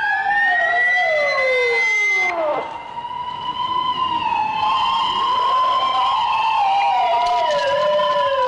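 Police car sirens wailing, several overlapping: one holds a steady pitch while others sweep down in long falling glides, again and again.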